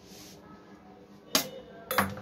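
Two sharp metallic clanks about half a second apart, the second louder, each with a short ring: stainless steel bowls being set down.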